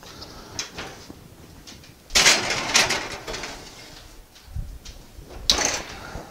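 Rustling and clattering handling noises in a small room, loudest for about a second from two seconds in and again briefly near the end.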